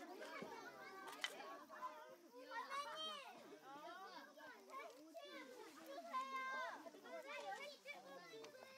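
Many children's voices chattering and calling out over one another, with one or two sharp clicks of stone being knapped.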